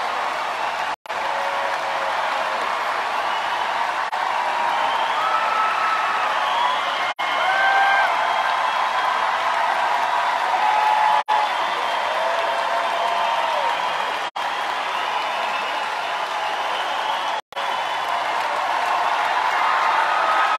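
Large arena crowd cheering and applauding, with scattered shouts and whoops over steady clapping. The sound cuts out for an instant five times.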